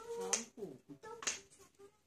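Homemade toy stilts made from plastic surprise-egg capsules clacking on a hard floor as a child steps on them: two sharp clacks about a second apart.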